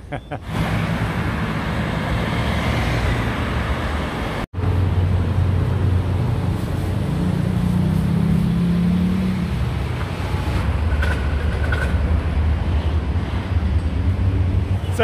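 Road traffic: steady engine and tyre noise of passing motor vehicles, with a brief cut about four and a half seconds in. Around the middle one engine's note rises slightly as it accelerates.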